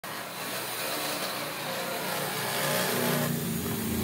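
An engine running steadily under a wide hiss, growing a little louder over the last second or so.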